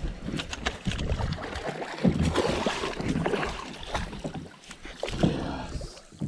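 Wind rumbling in gusts on the microphone over open water, with scattered knocks and rustles as a landing net on a long pole is swung out and brought back aboard a bass boat.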